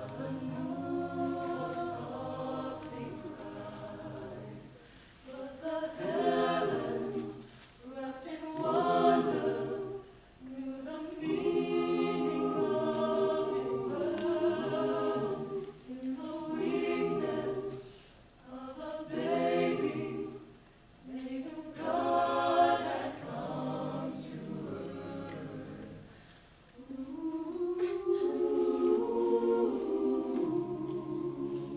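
Mixed choir of carolers singing a cappella, in phrases of a few seconds with brief pauses between them.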